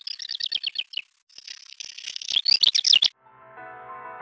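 Male black redstart singing: a quick rattling run of high notes for about a second, a brief pause, then a longer, pressed, scratchy crackling phrase that is loudest near its end and stops about three seconds in. Soft background music comes back in near the end.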